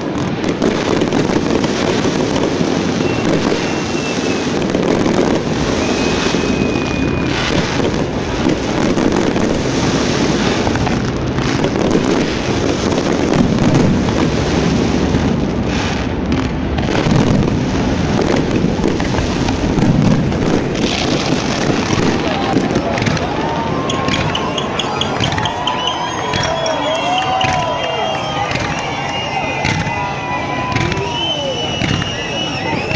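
Fireworks display: a dense, continuous barrage of bangs and crackling from many shells bursting at once.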